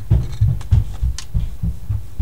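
An irregular run of dull, low thumps with a few faint clicks: desk and handling bumps near the microphone as the lecturer handles something at his desk.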